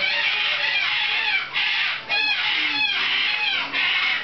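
Moluccan cockatoos screaming: a run of loud, harsh, drawn-out screeches, each about a second or more long, with brief breaks between them.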